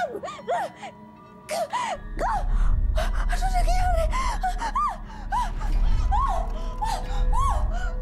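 A woman gasping and crying out in pain, short cries one after another, while a low rumbling drone of dramatic score comes in about two seconds in.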